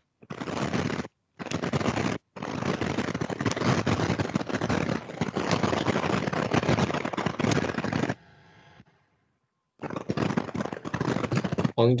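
Loud rustling, crackling noise from a participant's microphone in an online call, cutting in and out abruptly with a dropout of about two seconds near the end. It is taken for wind noise on the microphone.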